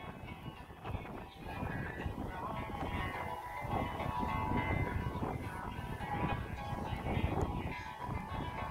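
Music from a JBL PartyBox 300 portable party speaker heard from about 160 metres away, with wind rumbling on the microphone.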